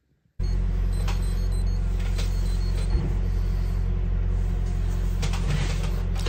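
Silence, then a steady low hum that starts abruptly about half a second in, with a few faint clicks over it.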